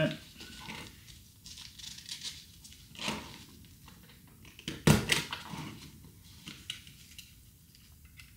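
Mesh fly screen and its fabric edging being handled and folded, with soft rustling. A few sharp clicks from a handheld stapler fastening the edging come through, the loudest just under five seconds in.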